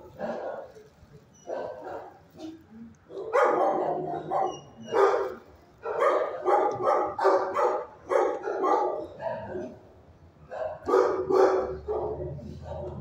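Dogs barking in a shelter kennel: a few barks in the first seconds, then a dense run of quick barks from about three to nine seconds in, and a few more near the end.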